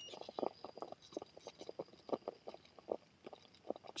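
Small 1/10-scale RC rock crawler creeping over rock, its tyres and chassis making quiet, irregular little crunches and clicks on the stone, several a second.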